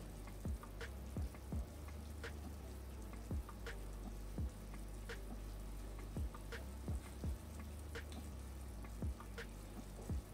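Rabbit pieces frying in a stainless steel pot, with scattered crackles and pops, about one or two a second, as honey is poured in and stirred, over a low steady hum.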